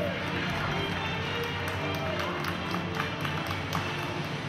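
Floor-exercise music playing over the arena, with a run of sharp taps and thuds in the second half from the gymnast's feet on the floor mat during her dance steps.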